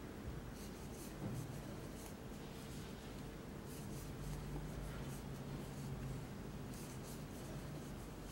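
Faint, irregular scraping and rustling of a metal crochet hook pulling yarn through stitches as single crochet stitches are worked, over a low steady hum.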